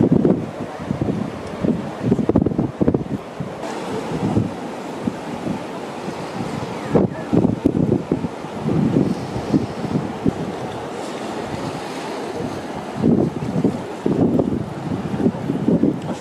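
Gusty wind buffeting the microphone in irregular bursts, over a steady wash of breaking sea waves.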